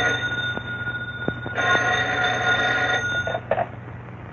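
Electromechanical telephone bell ringing twice: one ring ending just after the start and a second of nearly two seconds, then a brief clatter near the end.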